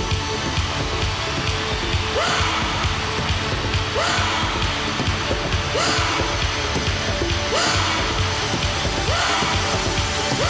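Live drum solo on an electronic drum vest, with dense low drum hits throughout. From about two seconds in, a rising yell comes back about every two seconds.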